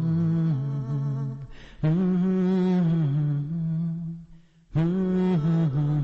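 Unaccompanied vocal music: a low voice humming a slow, ornamented wordless melody in long held phrases, breaking briefly twice, near two seconds and near five seconds in.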